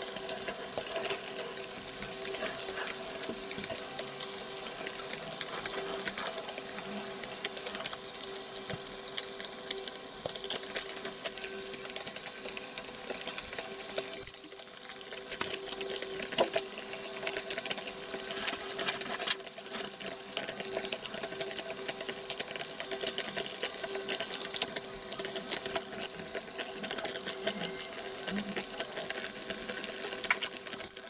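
Self-heating hotpot heating up under its closed lid: water bubbling and fizzing inside the plastic box as the flameless heating pack reacts. A steady hum of a few tones runs underneath.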